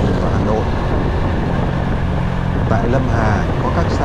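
Motorcycle engine running steadily at cruising speed on an open road, from an old 2005 Honda Future Neo underbone scooter.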